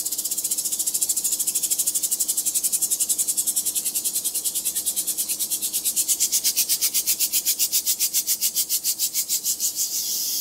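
Cold helium gas hissing out of the tip of a liquid-helium transfer line in rapid, even pulses, about six or seven a second, spacing out slightly toward the end. The line is still pre-cooling, and liquid helium has not yet come all the way through.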